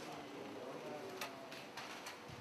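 Quiet office room tone with a faint murmur of voices and a few sharp clicks, a little over a second in and again near the end.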